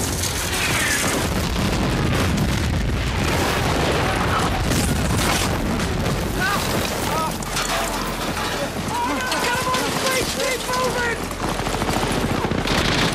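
Battle sound from a World War II combat drama: a continuous rumble of explosions and gunfire, with men's shouts heard in the second half.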